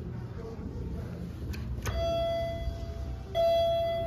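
Elevator arrival chime sounding twice at the same pitch, two clear bell-like tones about a second and a half apart, each fading out, from a Schindler 5500 traction elevator.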